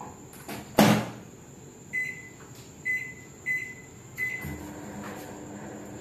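Samsung microwave oven door shut with a sharp clunk about a second in, then four short beeps from its keypad being set. The oven starts cooking with a steady hum a little after four seconds in.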